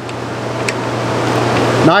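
Steady hiss over a low, constant hum, like a fan or air handler running in the room. A single light click under a second in, as a flathead screwdriver turns down a terminal screw on the disconnect.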